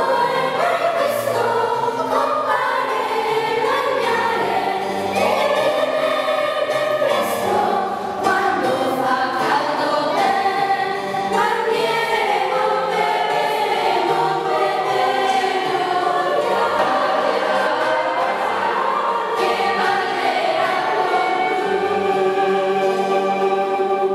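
Children's choir (voci bianche) singing a song together, with sustained notes changing every second or so.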